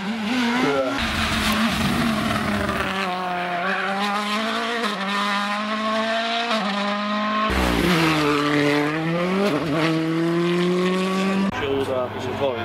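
World Rally Car turbo engines running hard on a tarmac rally stage, the engine note holding high with small steps at gear changes. About seven and a half seconds in the sound cuts to another car whose pitch dips as it slows, then climbs again as it accelerates away.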